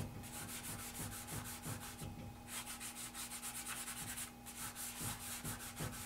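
Fingers rubbing charcoal into drawing paper in quick back-and-forth strokes, blending the shading into a smooth dark tone. The faint scratchy rubbing pauses briefly about two seconds in and again a little past four seconds.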